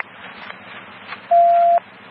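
A single steady electronic beep of about half a second from police dispatch radio, sounding past the middle of a low hiss of radio noise between transmissions.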